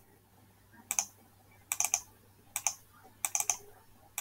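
Computer keyboard keys clicked in four short bursts of two or three sharp clicks each: about a second in, near two seconds, and twice more in the second half.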